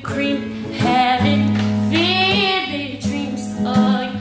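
A woman singing a soul ballad in a voice that slides and bends between notes, over a strummed acoustic guitar.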